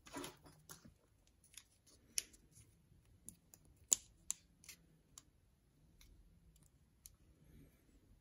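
Scattered small clicks and taps of a flat metal tool against a metal lens bayonet mount as it is handled, with a short rustle at the start and the loudest tap about four seconds in.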